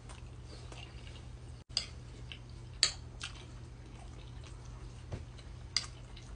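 Close-miked chewing: a few sharp, wet mouth clicks scattered among quieter chewing, over a steady low hum.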